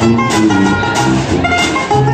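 Traditional New Orleans jazz band playing a stomp live. A sousaphone bass line, strummed banjo and guitars, and washboard keep a steady beat of about two a second, with clarinet and horn melody lines on top.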